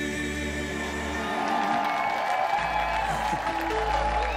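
Male vocal trio singing the close of a schlager song over a band backing, with audience applause building up in the second half.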